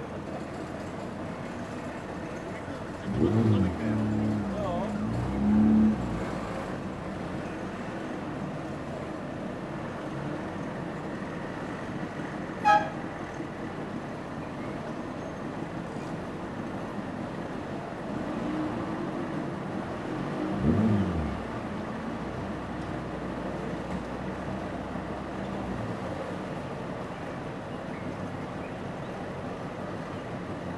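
A convoy of Trabant cars, their two-cylinder two-stroke engines running as the queue creeps forward, with louder horn toots about three to six seconds in and again around twenty-one seconds, and a single sharp click a little before halfway.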